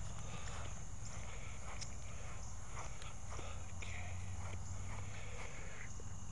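Footsteps walking across grass, an irregular run of soft thuds.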